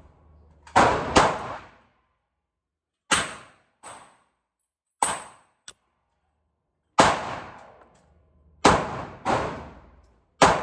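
Glock 43 9mm pistol fired at a slow, irregular pace: about eight sharp shots, each trailing a short echo in an indoor range, a couple of them fainter than the rest.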